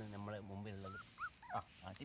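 A puppy giving a few short, high whimpers and yips in the second half, after a man's drawn-out low voice in the first second.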